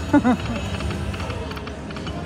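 Slot machine game music and spin sounds as the reels turn, over steady casino background noise, with a brief voiced sound like the tail of a laugh right at the start.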